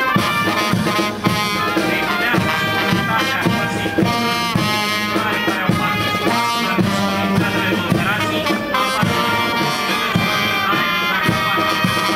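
Military brass band playing a march, with brass instruments holding the tune over steady drum beats.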